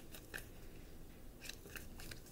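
Tarot cards being handled in the hand: a few faint, crisp clicks and snaps of card edges against each other.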